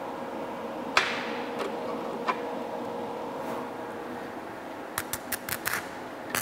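SMAW (stick) electrode being struck on a steel plate from an AC welding machine, over a steady hum: a few isolated snaps, then a quick run of sharp crackles about a second before the end as the arc catches. This is the test strike showing that current is passing through the electrode and the machine is connected.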